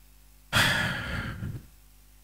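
A person's long sigh, one breathy exhale about a second long that starts sharply about half a second in and fades away.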